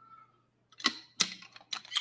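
Four sharp clicks or taps at a desk, starting about a second in and spaced a fraction of a second apart, after a near-silent moment.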